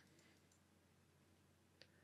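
Near silence: room tone, with one faint computer-mouse click near the end.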